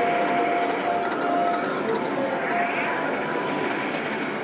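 Video slot machine spinning its reels in a free-games bonus round, giving short electronic tones and ticks over a steady background din.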